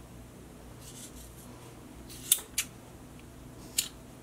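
Scissors snipping through 550 paracord ends, trimming the loose cords about a quarter inch from the weave: three short sharp snips, two close together a little past halfway and one near the end.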